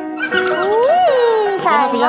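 One drawn-out vocal call, rising in pitch to a peak about a second in and then falling away, over steady background music.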